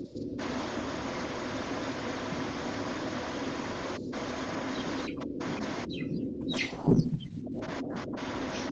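Steady hiss of background noise from an open microphone on an online video call, dropping out briefly several times, with a short low thump about seven seconds in.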